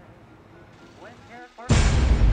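Quiet room tone with faint voices, then about 1.7 seconds in a sudden loud rush of noise with a deep rumble cuts in as the outro starts.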